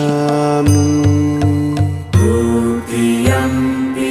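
Devotional background music with a mantra-style chant in long held notes, over a low pulsing beat in the first half.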